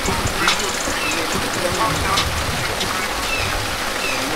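Several people talking in the background, with no clear words, over a steady rushing hiss.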